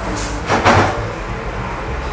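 Steady low hum of a workshop machine running, with a short rasping noise about two-thirds of a second in.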